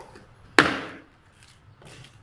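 One sharp wooden knock about half a second in, the loudest sound, from a walking stick struck down on a concrete floor. It is followed by a few faint, uneven taps of the stick and footsteps as the man walks off.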